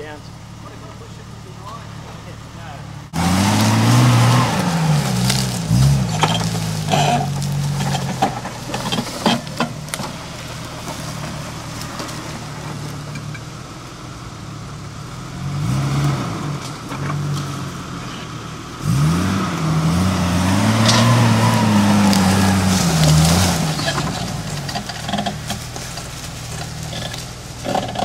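Jeep TJ engine climbing a steep off-road track. It runs low and steady for the first three seconds, then the revs rise and fall repeatedly, with a long spell of high revs about two-thirds of the way through, and scattered sharp cracks and knocks.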